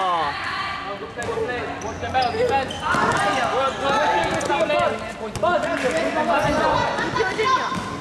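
Basketball dribbled on a wooden gym floor during a game, the bounces mixed with players and the bench shouting in a reverberant hall.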